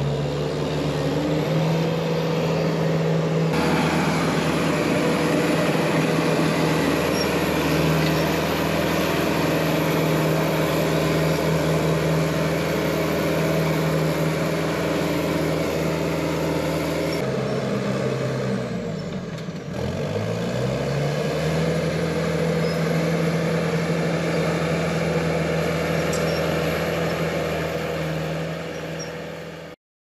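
Crawler bulldozer engine running steadily under load. About two-thirds of the way through, its pitch sags and comes back up within a couple of seconds. The sound cuts off suddenly at the very end.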